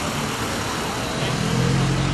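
A car engine running nearby over steady outdoor background noise. Its low hum grows louder in the second half.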